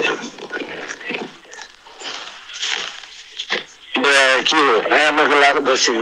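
A person's voice without clear words: breathy, noisy sounds for the first few seconds, then from about four seconds in a louder voiced stretch with a wavering pitch.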